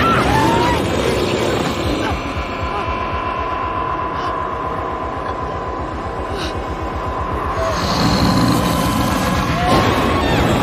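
Tense horror-film score: a low, rapidly pulsing rumble under a single held high tone, swelling again near the end.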